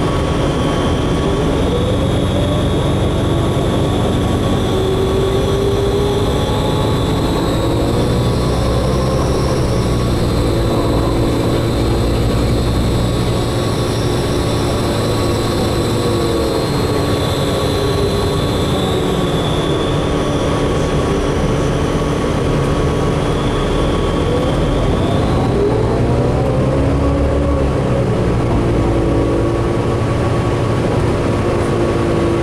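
Inside a 2003 New Flyer DE40LF diesel-electric hybrid bus under way: the Cummins ISB six-cylinder diesel and Allison EP40 hybrid drive running, with a steady low rumble and a whine that rises and falls in pitch several times as the bus speeds up and slows.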